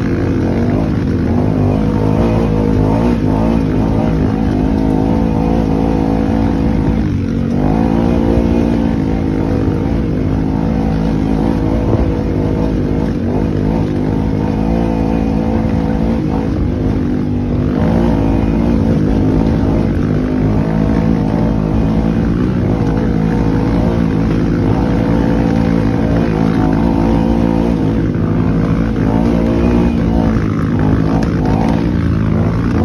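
Side-by-side UTV engine running steadily under way, heard from inside the cab, with the engine speed dipping and rising again a couple of times.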